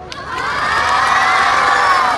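A crowd of children cheering and shouting, swelling up about half a second in and staying loud.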